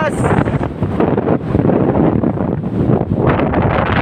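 Loud, gusty wind buffeting a phone's microphone.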